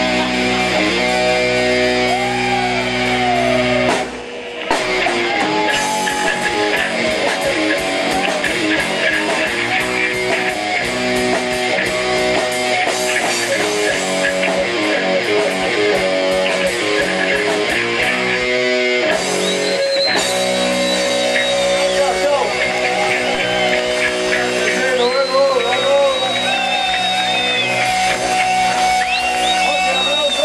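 Rock band playing live on electric guitars and drums, with a short break about four seconds in before the band comes back in.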